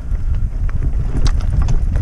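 Mountain bike rattling and its tyres knocking over a rough stone path, with scattered sharper knocks in the second half, under heavy wind buffeting on the microphone.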